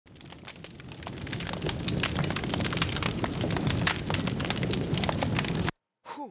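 Dense, rain-like crackle: a steady patter of many small clicks over a low rumble. It grows louder over the first two seconds and cuts off abruptly near the end.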